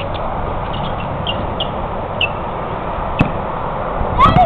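Short, falling bird chirps, several in the first half, over a steady background hiss, with one sharp knock about three seconds in.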